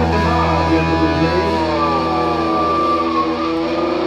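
Live rock band music: electric guitar holding ringing notes that slide slowly down in pitch over a steady held bass note, with no drumbeat.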